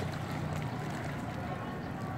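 Swimming pool water sloshing and splashing as a swimmer does breaststroke, a steady wash of water noise with wind on the microphone.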